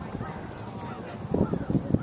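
Horse's hoofbeats on a sand arena footing: a quick run of low thuds near the end, over faint distant voices.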